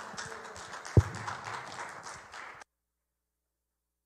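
Rustling and handling noise on a handheld microphone, with one loud thump about a second in, then cuts off abruptly a little past halfway.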